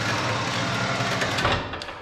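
Electric winch on a CFMoto ZForce 800 Trail side-by-side reeling in its cable to lift a front-mount KFI snow plow blade: a steady motor whir that winds down and stops near the end.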